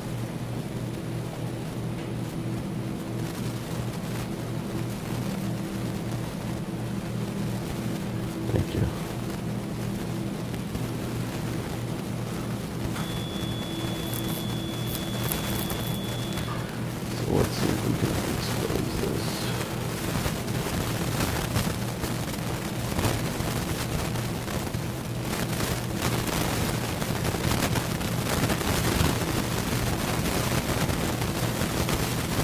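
Steady low electrical hum of operating-room equipment. A single steady high-pitched beep sounds for about three and a half seconds a little before halfway, and faint clicks and handling noises follow in the second half.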